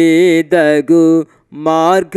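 A man singing a Telugu Christian song unaccompanied into a microphone: short held notes with a slight waver, broken by brief breaths, and a pause a little past halfway before he sings on.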